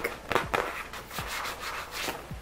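Plastic zippered toiletry pouch being handled, rubbed and squeezed between the hands. A few short scuffs come first, then a longer rubbing rustle about a second in.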